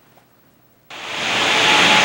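Near silence for about the first second, then a steady rushing noise fades in and grows louder.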